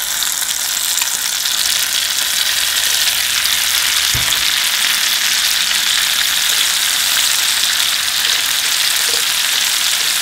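Shrimp sizzling loudly in hot olive oil with garlic and chili as they go into the pan and are turned with chopsticks; the sizzle swells in the first second, then holds steady. A dull knock about four seconds in.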